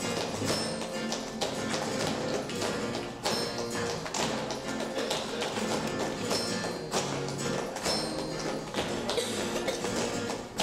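Mixed choir singing a Christmas carol, accompanied by steady rhythmic hand clapping and a triangle.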